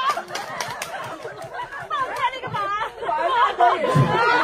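Excited voices of a crowd chattering and calling out over one another, some pitched high.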